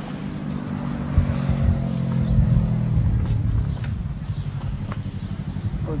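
A motor vehicle engine running steadily nearby with a low, even hum that eases after about four seconds into a pulsing rumble. A few faint knocks sound over it.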